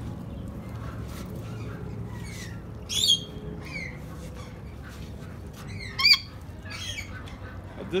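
Rainbow lorikeets squawking: two loud, high screeches about three and six seconds in, over scattered chirps.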